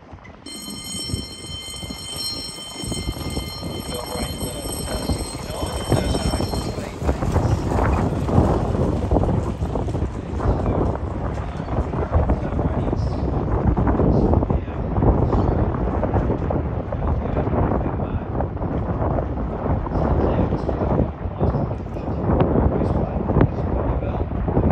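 Bell ringing steadily for about six seconds, the signal that the leaders are on the last lap of the race. Under it, and then alone, loud gusting wind buffets the microphone.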